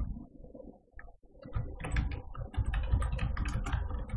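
Typing on a computer keyboard: irregular keystroke clicks with dull thuds, pausing briefly about a second in and then coming thick and fast.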